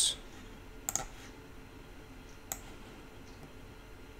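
Computer mouse clicking: a quick double click about a second in, a single click at about two and a half seconds and a faint one after it, over a low steady hiss.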